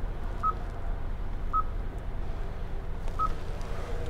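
Touch-confirmation beeps from a 2019 Kia Cadenza's dashboard infotainment touchscreen as its menu buttons are pressed: three short single-pitch beeps, about half a second in, about a second and a half in, and just after three seconds, over a steady low hum.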